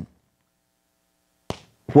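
Near silence in a pause between spoken sentences, broken by one brief click about one and a half seconds in.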